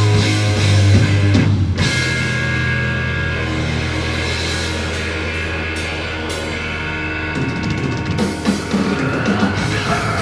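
A live heavy rock band playing loud. The guitar and bass hold long, low distorted chords, with a short break just under two seconds in, and the drums come in with sharp hits near the end.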